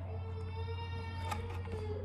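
A thick cardboard board-book page being turned, with a soft click about two-thirds of the way in. Under it are a low steady hum and a faint held tone.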